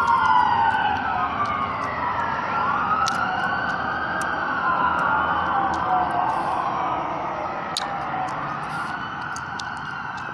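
Ambulance siren wailing, slow rising and falling sweeps that overlap one another. It is loudest at the start and fades gradually as the vehicle moves away.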